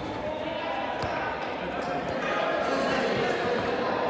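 Football being kicked on artificial turf, a few sharp thuds echoing in a large sports hall, under players' voices calling out across the pitch.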